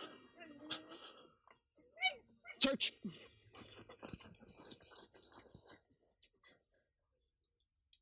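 A dog whines or yelps briefly in short high-pitched glides about two to three seconds in, over faint voices, with scattered light clicks afterwards.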